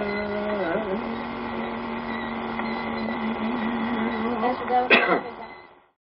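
A man's voice holding one long, low note that wavers slightly, then a short louder falling slide about five seconds in before it fades out.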